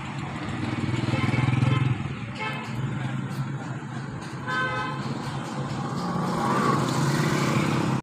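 Traffic heard from inside a car cabin: the car's steady low engine hum, with two short car-horn toots, one about two and a half seconds in and another near the middle.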